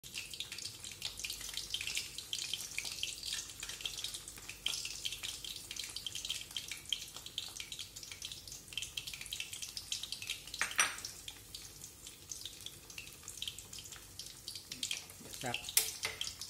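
Eggs frying in hot oil in a wok: a steady sizzle full of small crackles and spits, with one sharper pop about two-thirds of the way through.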